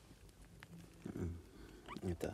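Quiet handling of a litter of kittens: a soft low rustle about a second in, then a brief rising kitten mew just before the end.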